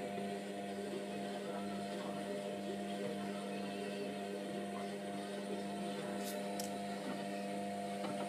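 Hotpoint Aquarius WMF720 washing machine in the wash phase, its motor turning the drum with a steady hum.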